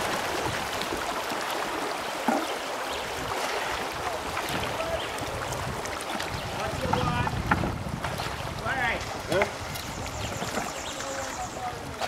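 River water rushing and rippling steadily around a bamboo raft being poled through a shallow current, with faint voices in the background.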